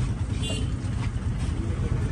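Steady low rumble of street traffic, with a brief faint high tone about half a second in.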